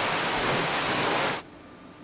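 Water splashing and churning in a wooden tannery vat, a loud steady rush that cuts off abruptly about one and a half seconds in, leaving only a quieter background.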